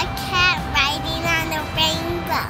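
A young girl saying "cat riding on a rainbow" in a high, lilting voice, in four quick phrases, over light background music.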